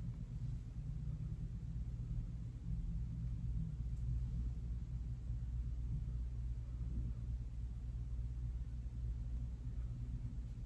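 A steady low hum of room tone, with no distinct events.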